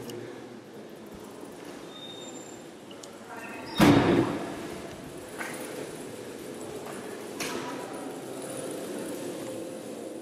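Railway station hall ambience: steady background noise, with a brief loud burst of noise about four seconds in, a short tone just before it, and a few faint knocks later.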